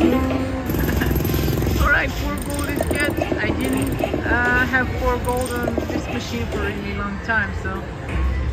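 Huff n' More Puff video slot machine playing its reel-spin and chime effects, with short gliding tones, as house symbols land across the reels. A steady rumble of casino-floor noise runs underneath.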